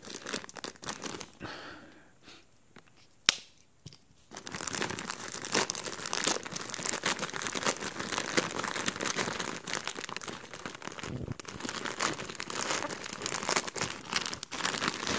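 Grey plastic poly mailer crinkling and being torn open by hand. There is a quiet spell with a single sharp click about three seconds in, then a long stretch of continuous rustling and crinkling of plastic.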